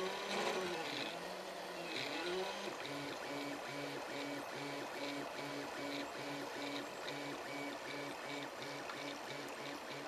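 Stepper motors of a homemade RepRap Prusa 3D printer, salvaged from old inkjet printers, singing as the print head moves. At first the tones rise and fall with longer curved moves. From about three seconds in they turn into a quick, even run of short repeated buzzes, over a steady hiss.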